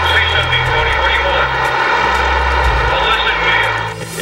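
A loud, steady engine drone with a low hum beneath it.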